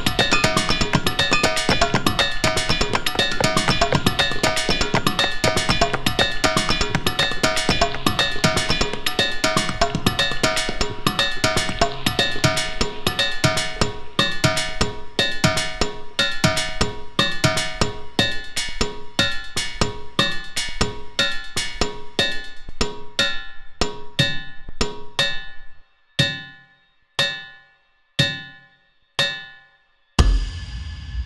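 Boulders at the Ringing Rocks struck with hammers in a phased rhythm for eight overdubbed players, each repeating a steady half-note beat offset by a sixteenth note: a dense clatter of bell-like ringing tones. The texture thins as players drop out one by one, until near the end a single rock is struck about once a second, each ring dying away.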